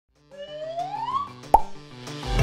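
Animated-intro sound effects: a rising tone glides up over about a second above a soft backing of stepped musical notes. A single sharp pop comes about a second and a half in.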